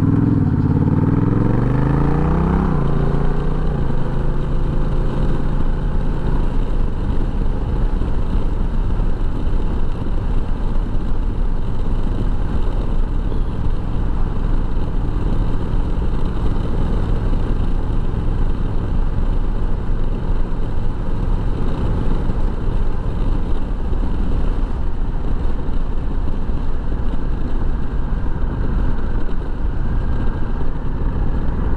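Honda Rebel 1100 DCT's parallel-twin engine accelerating away, its revs rising in several quick steps over the first few seconds as the gears shift, then running steadily at road speed under a rush of wind noise.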